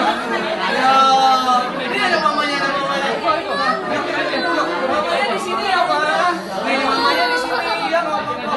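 Several people talking over one another in a room: indistinct chatter.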